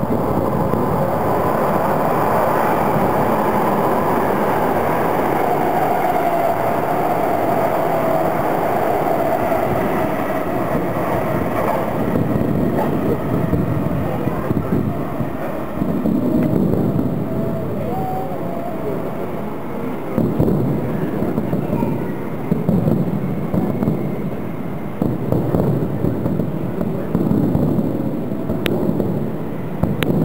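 A train running at the station during the first dozen seconds, with a slowly falling whine as it slows. After that, separate firework bursts come every few seconds over a background of voices.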